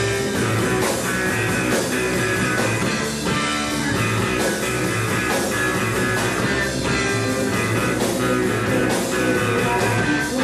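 Live rock band playing a psychedelic rock song: guitar over electric bass and drum kit, with a steady, even loudness.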